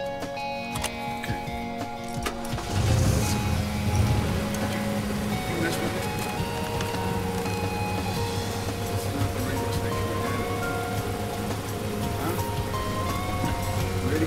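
Background music with steady sustained notes; about three seconds in a car engine starts and keeps running steadily underneath it.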